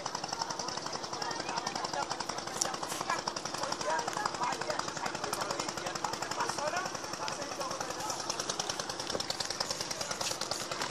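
A small boat's engine running at a steady speed with a rapid, even chugging.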